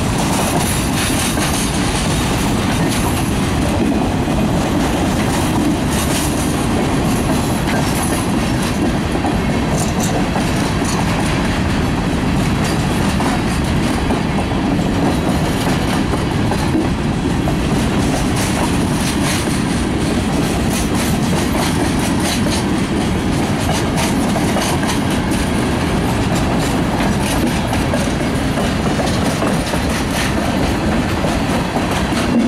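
Freight cars (covered hoppers and tank cars) rolling past at a grade crossing, steel wheels clacking steadily over the rail joints and crossing with a continuous rumble.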